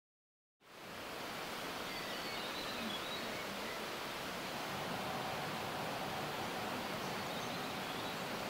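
Outdoor ambience at a landslide site: a steady, even rushing noise that starts just under a second in, with a few faint high bird chirps.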